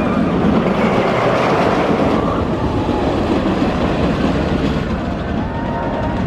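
Giant Dipper wooden roller coaster train running over its wooden track, a loud continuous rumble and rattle through the timber structure, easing slightly toward the end. A few faint high-pitched glides come in near the end.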